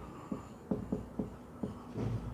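Whiteboard marker writing capital letters on a whiteboard: a quick run of short strokes, about four a second.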